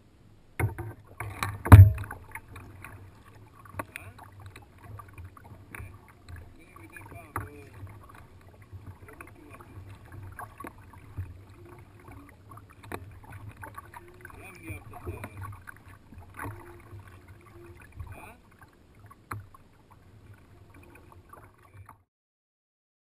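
A sit-on-top kayak at sea, heard from a camera on its deck: water lapping and paddle splashes, with scattered small knocks on the hull and a loud thump about two seconds in.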